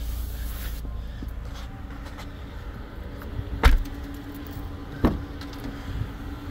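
Handling and movement noise, then a 2024 Nissan Murano's rear door shut with a loud thump a little past halfway, followed about a second and a half later by a lighter knock.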